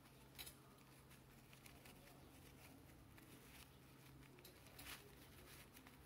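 Near silence: quiet room tone with a low steady hum and a few faint rustles of black ribbon and thread being handled as a bow is gathered on a running stitch.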